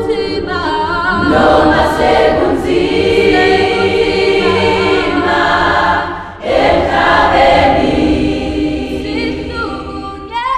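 Choir singing in loud, sustained held chords. The voices drop away briefly about six seconds in, then swell back into a new phrase.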